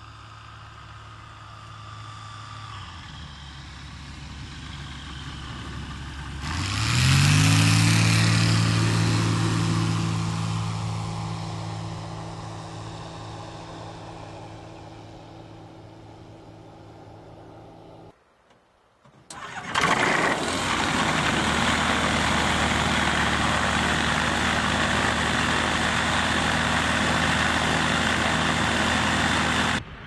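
Zenith kit aircraft's engine and propeller on a low pass. The engine note builds, rises in pitch and peaks about six to seven seconds in, then fades slowly as the plane climbs away. After a cut to near silence at around eighteen seconds, the engine runs loud and steady close by for the last ten seconds.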